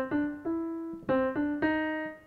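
Piano sound from a keyboard: single notes stepping upward three at a time, played twice, each note ringing until the next.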